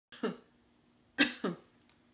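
A woman coughing: one cough, then two quick coughs about a second later.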